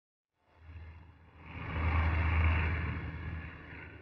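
Propeller airliner's engines droning in flight, a low steady hum under a broad rushing noise. It swells to a peak about two seconds in and fades toward the end.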